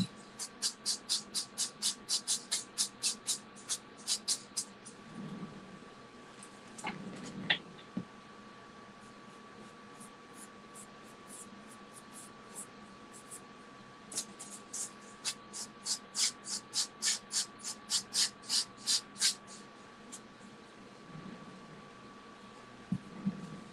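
Pastel stick rubbed back and forth on paper in quick, even scratchy strokes, about four a second. There are two runs of these strokes, one at the start and one in the second half, with a couple of light knocks in between.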